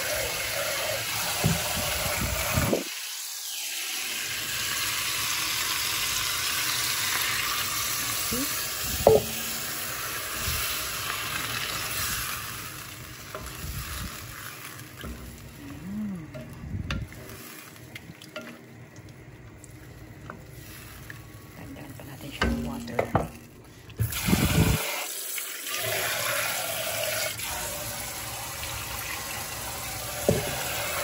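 Tap water running into a stainless-steel pot as rice is rinsed, then quieter stretches of a ladle stirring in an enamel soup pot, with a few clinks; the running water comes back near the end.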